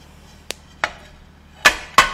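Dishes and utensils knocking and clattering: two light knocks, then a loud ringing clatter near the end.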